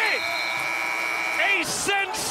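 Arena game-clock buzzer sounding one steady tone for about a second and a half, signalling the end of the game, with a commentator's voice briefly at either end.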